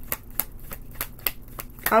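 A deck of tarot cards being shuffled by hand: a string of quick, irregular card clicks and flicks.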